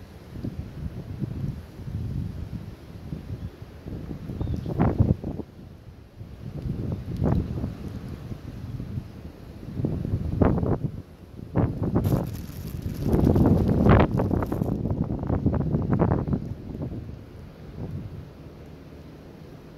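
Wind buffeting the microphone in uneven gusts, with several short knocks and a spell of close rustling from hands handling the line and hook near the microphone.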